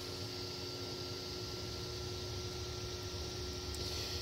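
Creality Ender 3 V3 SE 3D printer running after its print job is resumed: a steady hum of its cooling fans and stepper motors with a faint high whine over a soft hiss, the whine stopping just before the end.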